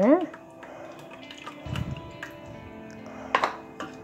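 Faint background music with steady held tones. Under it, a metal ladle stirs egg and maida batter in a steel bowl, with a soft wet squelch about halfway through and a single sharp click near the end.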